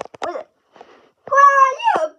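A loud, high-pitched drawn-out cry, about half a second long, starting just past a second in: held on one pitch, then sliding down at the end, with a few short faint sounds before it.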